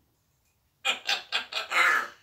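African grey parrot calling: a quick run of five or six short calls starting just under a second in, growing louder, the last one the longest and loudest.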